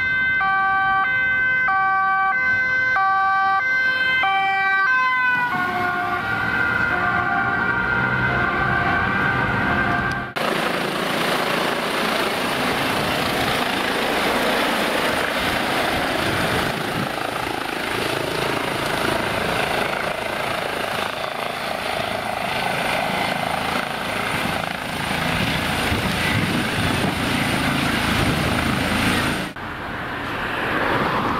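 Two-tone siren of a Dutch police van, switching back and forth about once a second, then dropping in pitch as the van passes. After an abrupt change about ten seconds in, the steady rushing of the Lifeliner 2 trauma helicopter's rotors, with a thin high turbine whine, as it flies low enough to blow leaves into the air.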